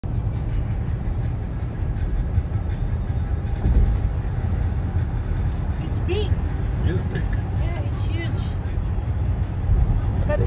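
Road noise inside a moving car's cabin on a highway: a steady low rumble of tyres and engine. Faint voices come through about six seconds in.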